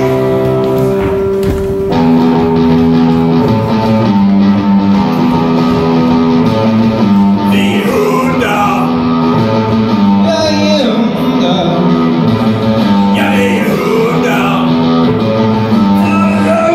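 Live band music led by a guitar playing a repeating chord pattern over a steady bass line, with a voice singing short phrases about halfway through and again near the end.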